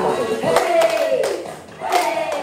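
Several people clapping their hands a few times over a sung song: a cluster of claps about half a second to a second in, and another just before the end.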